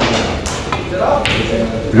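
A pool cue striking the cue ball, followed by a few sharp clicks of the balls colliding on a sinuca table, over background chatter and music.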